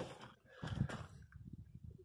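Faint, soft low thuds and shuffling as a pickup truck's door is opened and the person steps up to the cab, then a few quieter taps.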